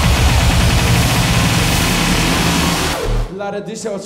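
Bass-heavy club dance music with a hissing noise sweep building over it, cutting out about three seconds in. An MC's voice then comes in over a held low bass note.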